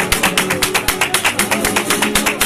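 Several Spanish guitars strumming a flamenco rhythm while a crowd claps palmas along in fast, even handclaps, about six a second.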